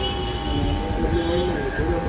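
Corded electric hair clippers running with a steady hum as they trim the back of a client's neck, with voices talking over it.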